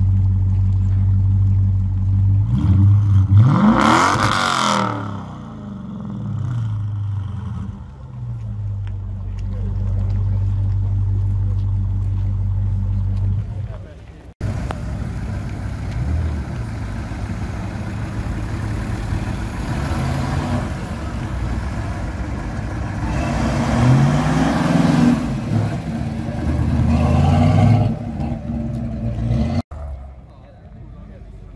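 Dodge Challenger idling, blipped once about three seconds in with a quick rise and fall in pitch, then settling back to a steady idle. After a cut, another car's engine rumbles and is revved twice near the end over crowd chatter.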